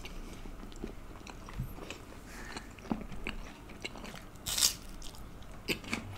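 Close-miked chewing of a mouthful of food: irregular wet mouth clicks and soft crunches, with one brief louder noisy burst about four and a half seconds in.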